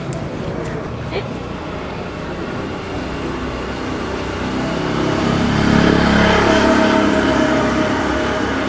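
Road traffic on a city street: a car passing close by, its sound swelling to a peak about six seconds in.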